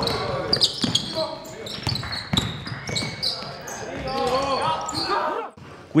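Basketball game sounds in a gymnasium: a ball bouncing sharply on the hardwood floor a few times, short high sneaker squeaks, and players' voices calling out across the hall.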